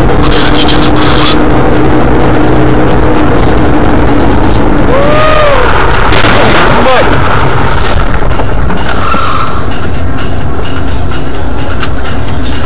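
Car driving noise picked up by a dash camera: loud, steady road and engine noise. About five seconds in come a few brief squeals that rise and fall in pitch.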